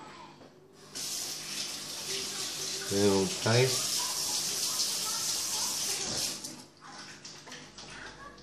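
Water running steadily, like a tap, for about five seconds, starting and stopping abruptly. A short voice sound in the middle is the loudest moment.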